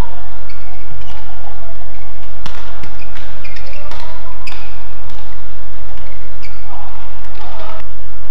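Badminton rackets striking a shuttlecock in a rally, sharp cracks a second or two apart, with shoes squeaking on the court, over a steady low hum.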